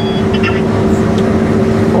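New Holland CR8.80 combine harvester running under load while harvesting, heard from inside its cab: a steady drone with two constant hums.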